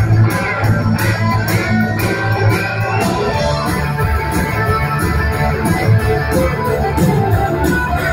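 Live rock band playing loud: electric guitars and bass guitar over a steady drumbeat.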